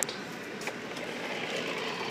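Steady indoor background hum of a large store, with a short click right at the start and a fainter one under a second later.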